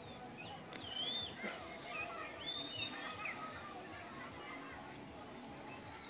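Faint outdoor ambience: distant voices mixed with scattered bird chirps and calls, busiest in the first three seconds and thinning out after.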